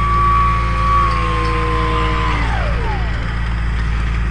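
The RC plane's 1000kv electric motor and propeller whining at a steady pitch, then winding down and fading about two and a half seconds in as the throttle is cut for landing. A steady low rumble runs underneath.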